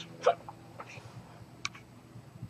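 A man's sudden hiccup-like catch of breath, loud and short, about a quarter second in. A few fainter breath sounds follow, with a small sharp click near the end.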